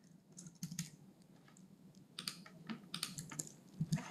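Computer keyboard typing: faint, light keystrokes in short, irregular runs as text is entered into form fields.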